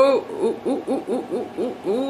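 A woman's voice hooting a rapid string of 'ooh' sounds, about four a second, each one rising and falling in pitch, the first and loudest right at the start.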